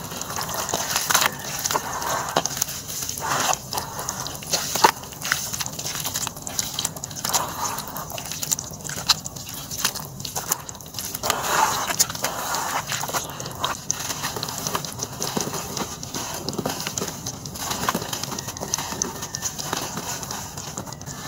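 Hands squeezing and kneading wet red sand slurry in a plastic tub: irregular squelching and sloshing of water with gritty crackles and small clicks.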